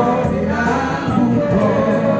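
A man singing into a microphone over amplified backing music with a steady beat.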